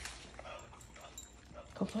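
A dog's claws ticking now and then on a hard floor as it moves about, with a short, faint whine about half a second in.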